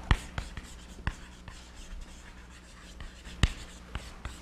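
Chalk writing on a blackboard: scratchy strokes broken by a few sharp taps of the chalk on the board, the loudest about three and a half seconds in.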